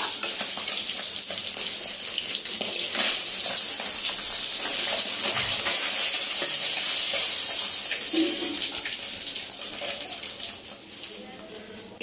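Hot oil in a kadai sizzling steadily after fish pieces have been fried in it, with small scrapes and clicks from a metal spatula lifting the fried katla out. The sizzle dies down over the last couple of seconds.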